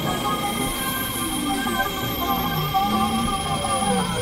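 Dense experimental collage of several overlapping music tracks, layered into a thick wall of sound with steady high drone tones, a slowly gliding high whistle and scattered short pitched fragments beneath.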